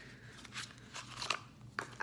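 Quiet handling of small cosmetic packaging: a few short clicks and rustles as a liquid foundation pump bottle is opened and taken out of its cardboard box.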